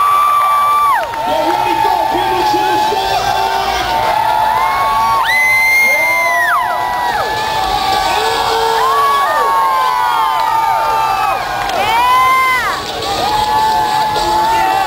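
Large crowd cheering and screaming, many high voices holding long shouts over one another, loud and unbroken.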